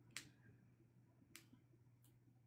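Near silence with two faint, sharp clicks a little over a second apart, over a low steady hum.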